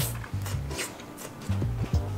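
Background music with a steady bass beat, over the crinkling of a candy wrapper being peeled off a melted chocolate peanut-butter pumpkin.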